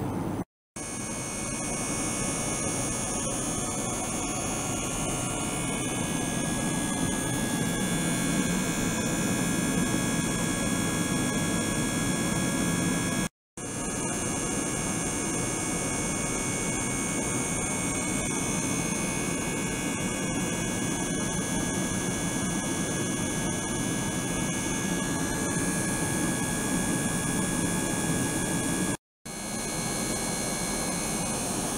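Ultrasonic water tank and its small circulating pump running: a steady hum and hiss with several thin, steady high-pitched tones over it. The sound cuts out completely for a moment three times, near the start, about halfway and near the end.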